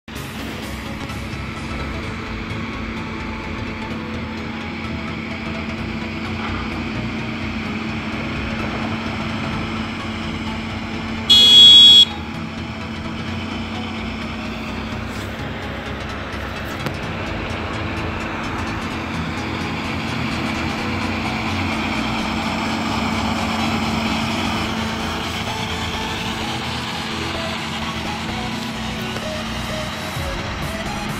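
Tractor engines running steadily under load while the tractors level a field with towed scrapers. About eleven seconds in, a loud horn toot lasts under a second.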